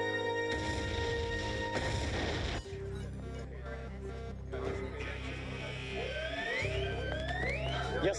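Film soundtrack: held music tones give way about half a second in to a distant explosion rumble of about two seconds as a crashed F-18 goes up in a fireball. After it, a pulsing low synth drone, and near the end a quick rising electronic tone repeating about twice a second.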